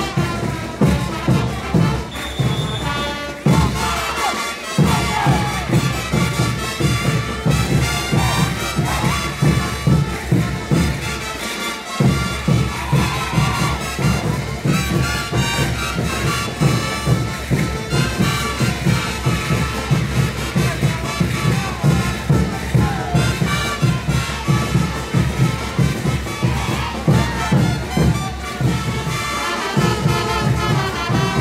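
Caporales music played by a brass band, with a steady driving beat that drops out briefly twice, and crowd cheering.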